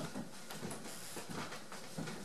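Footsteps on a wooden plank floor: a few soft, uneven knocks over a steady background hiss.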